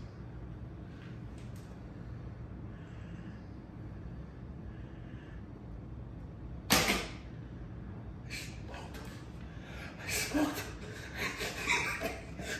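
A traditional recurve bow shot: the string released once from full draw with a single sharp snap about two-thirds of the way in, followed by scattered knocks and handling noise.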